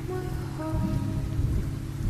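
Steady rain with a low rumble of thunder about a second in, under the thinned-out, held notes of a slowed, reverb-heavy pop song between vocal lines.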